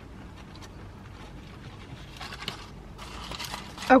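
Quiet eating sounds: chewing of fried cheese bites with the rustle and scrape of the paper-lined food container being handled, in two short spells in the second half.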